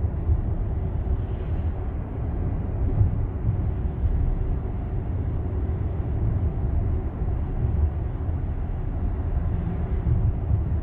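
Steady low road rumble inside a Tesla's cabin while driving: tyre and wind noise with no engine sound.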